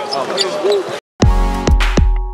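A man's brief laugh over crowd chatter, then a sudden cut at about one second to electronic background music with a heavy bass beat.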